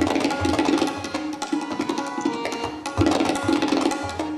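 Tabla played live in a fast solo passage: a rapid stream of strokes on the treble drum ringing at its tuned pitch, with a few deep bass-drum strokes and the loudest stroke about three seconds in.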